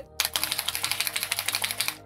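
Mixing ball rattling inside a small bottle of Dirty Down rust effect as it is shaken hard: rapid, even clicking. The ball rattles freely, a sign that it has come loose from the gunk it was stuck in at the bottom of the bottle.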